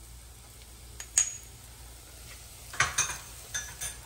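Metal spoon stirring a thick spiced gravy in a stainless steel saucepan, with sharp clinks of the spoon against the pan: one about a second in and several in quick succession near the end.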